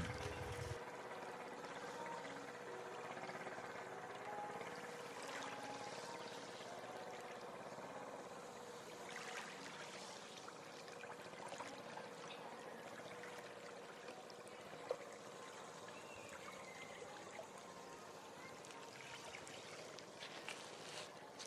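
Faint wash and lapping of small sea waves along the shore, with a faint steady hum underneath and one brief sharp tick about fifteen seconds in.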